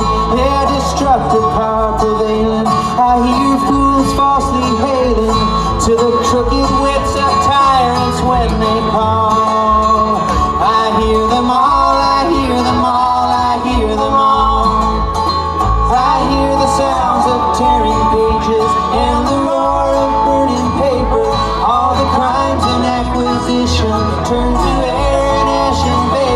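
Live bluegrass string band playing, with banjo, acoustic guitar and upright bass under a man singing lead into a microphone.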